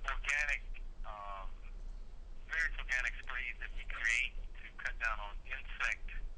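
A person speaking over a telephone line, with the thin, narrow sound of a phone call and a steady low hum underneath.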